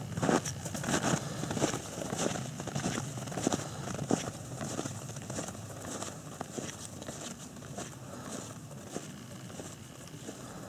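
Footsteps crunching through snow, a steady walking rhythm of about two to three steps a second that grows fainter toward the end.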